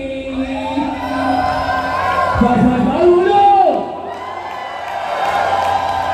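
Dance music cuts off and a crowd breaks into cheering, screaming and whooping, many voices calling out at once with long, sliding shouts.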